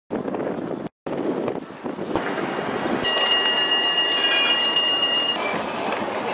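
Outdoor street noise with wind buffeting the microphone, broken by two short silences in the first second. From about three seconds in, a steady high whine of two tones holds for about two seconds.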